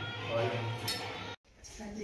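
Metal clinking from a brass aarti plate carrying an oil lamp, over music and voices; the sound cuts out suddenly about one and a half seconds in.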